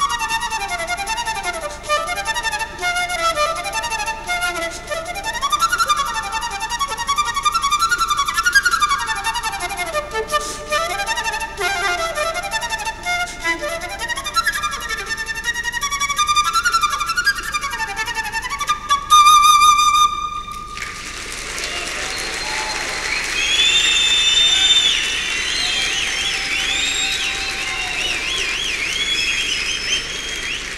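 Solo concert flute playing fast, rippling scale runs up and down in a Turkish longa, ending about two-thirds of the way in on a long held high note. The audience then breaks into applause and cheering.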